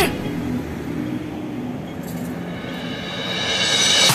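City street traffic: cars driving through a road junction, heard as a steady noise that grows louder toward the end as vehicles approach.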